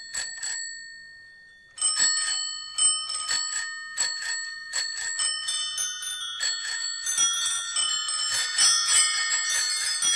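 Many bicycle bells ringing in the bell interlude of a rock song recording. A few rings, a short pause, then the rings come thicker and overlap into a dense, jangling wash near the end.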